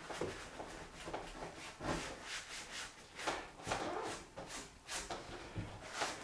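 Wide flat brush scrubbing stiff, dry oil paint onto a plywood panel in repeated short strokes, about two a second, each a faint bristly rasp.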